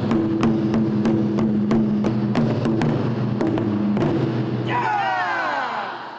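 Japanese taiko drums struck with wooden sticks, sharp hits about three a second over a held low tone. Near the end a descending glide sounds as the whole piece fades out.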